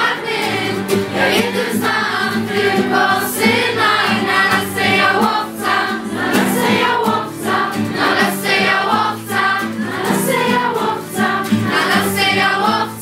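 A group of children and teenagers singing a song together in Polish, with steady low accompanying notes under the voices.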